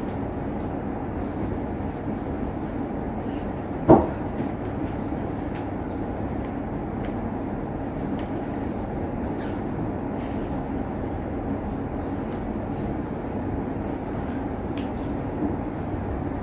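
Steady low rumbling background noise, with a single sharp thump about four seconds in and a few faint ticks.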